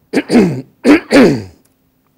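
A man coughing twice to clear his throat. The two coughs are loud and less than a second apart, and each trails off with falling pitch.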